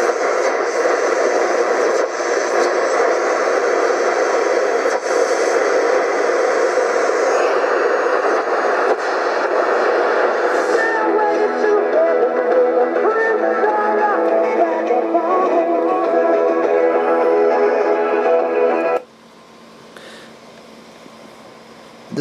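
Sony ICF-A10W clock radio's small speaker playing an FM broadcast through heavy static, from weak reception with its wire antenna missing, with music coming through from about eleven seconds in. The radio cuts off abruptly about three seconds before the end, leaving a faint hiss.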